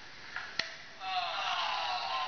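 A champagne cork popping once, a short sharp pop about half a second in, followed about half a second later by a person calling out with a long, slowly falling voice. The sound is played back through laptop speakers.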